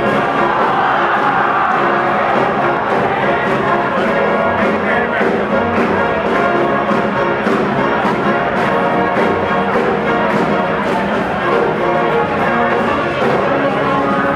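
Live big band playing, with the trumpet and trombone sections sounding together over a steady beat.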